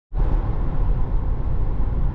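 Steady road and tyre noise heard inside the cabin of a Tesla Model 3 driving at speed: a low, even rumble with no engine note.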